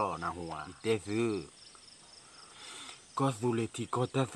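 A man talking, with a pause of about a second and a half in the middle before he speaks again. Faint, evenly repeating insect chirps run underneath and are heard most in the pause.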